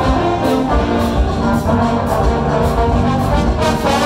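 A high school jazz big band playing live: trumpets and trombones hold chords together over a steady beat of drums and hand percussion.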